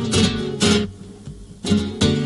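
Flamenco guitars strumming: a few sharp chords in the first second, a brief lull, then another strong chord near the end.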